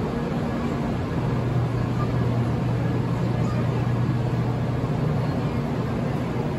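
923-series Doctor Yellow Shinkansen test train moving slowly along the platform: a steady low electric hum over a rumbling noise, growing a little stronger about a second in.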